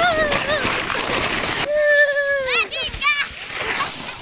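A plastic sled hissing and scraping over snow, with high, excited voices over it. The sliding noise stops abruptly a little under two seconds in. Then come one long high call and a quick run of warbling squeals.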